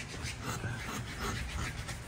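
A hand rasp scraping along a wooden board in soft, short strokes, over a low steady hum.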